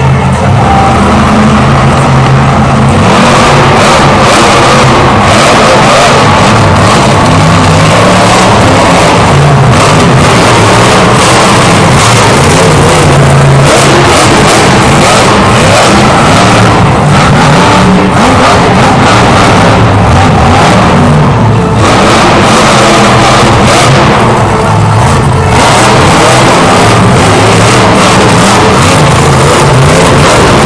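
Monster truck's supercharged V8 engine, loud and revving hard again and again, the pitch climbing and dropping back as the driver works the throttle.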